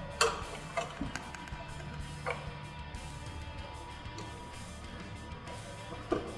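Soft background music with a few short clicks of a small screwdriver and plastic screw-terminal connector being worked while a jumper wire is fitted into the terminals, the clicks falling in the first couple of seconds.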